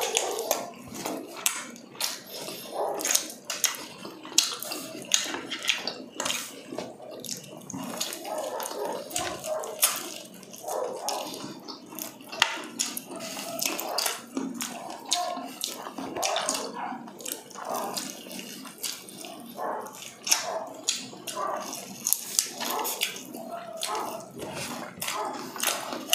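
Close-miked eating sounds: fried chicken being bitten and chewed, with a steady run of crisp crunches and clicks over wet chewing and mouth sounds.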